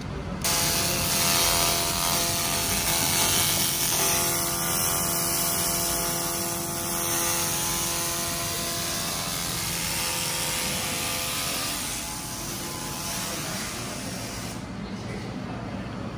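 300 W pulsed fiber laser cleaning head firing on a painted metal plate, ablating the coating with a steady hiss. A faint hum of several steady tones runs under it; the hiss starts about half a second in and cuts off near the end.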